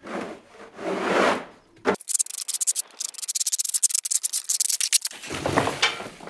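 Plastic shovel scraping across a rough, gritty floor. Two long scrapes come first, then about three seconds of dense, gritty scraping, then another scrape near the end.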